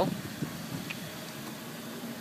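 Steady, faint background hiss with no distinct event.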